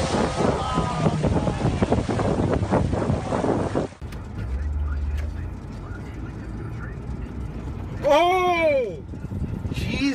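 A red Ferrari ploughing through shallow floodwater, water rushing and spraying, with excited voices over it. After a cut there is a low, steady engine and road hum inside a moving car, broken about eight seconds in by a loud, drawn-out shout.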